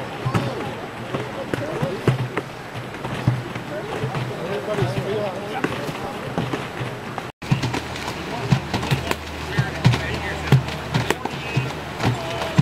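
Indistinct voices of several people talking at a distance, with scattered short knocks and splashes. The sound cuts out briefly about seven seconds in, after which a steady low hum joins the voices.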